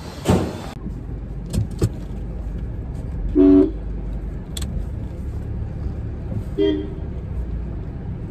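Two car horn toots, a louder one about three and a half seconds in and a shorter one near seven seconds, over a steady low vehicle rumble, with a few sharp clicks in the first two seconds.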